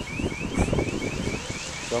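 A rapid series of short rising chirps, about three a second, like an alarm sounding, over wind buffeting the microphone.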